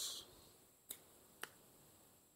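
Near silence broken by two faint, sharp clicks about half a second apart, near the middle.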